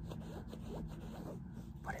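Faint rustling of bedding over a low, steady room hum.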